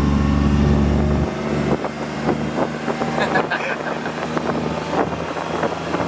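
Kawasaki Mule side-by-side utility vehicle's engine idling with a steady low hum. About a second in, the hum drops away abruptly and gives way to the sound of the vehicle on the move: wind on the microphone, road noise, and frequent small clicks and knocks.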